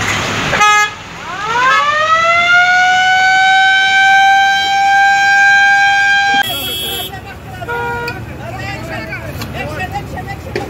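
A vehicle siren winding up, rising in pitch over about a second and a half, then holding one steady high note for about four seconds before cutting off abruptly. A short horn-like blip comes just before it, and a few brief steady tones follow.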